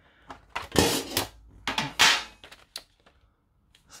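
A metal tin of Derwent Graphitint pencils being handled: two pairs of short clatters and scrapes, about a second and two seconds in, then a few light clicks.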